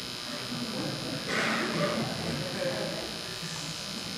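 Faint, indistinct speech from someone away from the microphone, over a steady electrical buzz. A short noisy burst comes a little over a second in.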